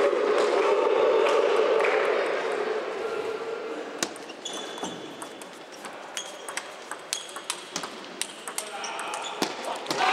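Table tennis rally: the ball clicks sharply off bats and table in quick alternation, about two strikes a second, from about four seconds in. Before that, a murmur of voices in the hall.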